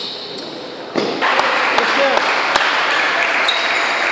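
Table tennis rally: a celluloid ball clicking sharply off the paddles and table, a few hits a second. From about a second in, a loud wash of crowd voices rises over it.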